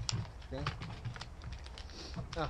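Small plastic packet of fishing hooks being handled and opened: a string of light, irregular clicks and crinkles, with some quiet speech about half a second in.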